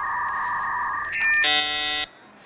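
Dial-up modem handshake: two steady carrier tones held together, changing pitch a little past a second in, then a dense chord of many tones about one and a half seconds in as the computer connects.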